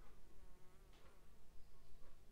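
Faint wavering buzz, with two soft clicks about one and two seconds in.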